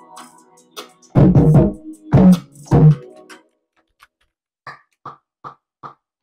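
A melodic hip-hop beat playing back from Logic Pro X: three heavy 808 bass and kick hits under sustained chord tones, then the low end drops away and only short light percussion hits come, about two and a half a second, near the end.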